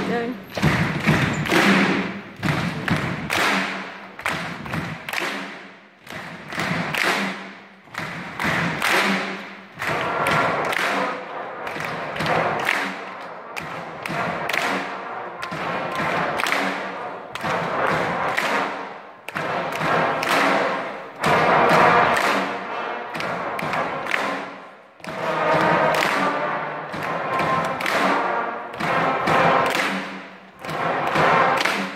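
A children's brass band of cornets, tenor horns, euphoniums and coloured plastic trombones playing together, with a heavy steady beat running through the music.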